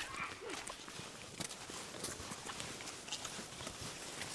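Faint footsteps walking on a dirt trail, a loose run of small irregular scuffs and ticks.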